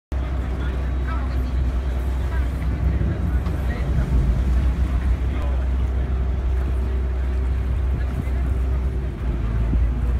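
Steady low rumble of a boat's motor heard from on board while cruising along a canal, with indistinct voices of people around.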